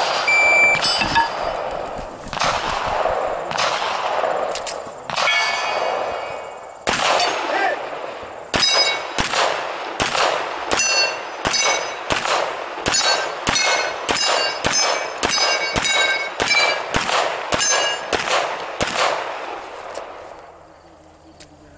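Gunshots on steel targets, each shot followed by a metallic ring from the struck plate. The shots come irregularly at first; from about eight seconds in they become a steady, fast string of pistol shots at about two a second, each with its ring, and they stop at the end.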